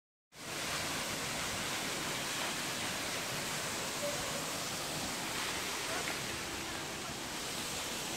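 Steady rushing of water from a rainforest creek and waterfall: an even, unbroken hiss that cuts in just after the start.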